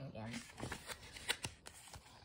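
Paper pages of a hardcover picture book being turned by hand: a few light rustles and flicks.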